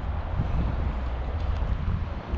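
Wind buffeting the camera's microphone, a steady low rumble with a faint hiss above it.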